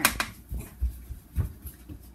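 Thick vanilla yogurt being poured and scraped out of a large plastic tub into a foil baking pan lined with plastic wrap: a sharp click at the start, then a few soft thuds and knocks of the container and pan.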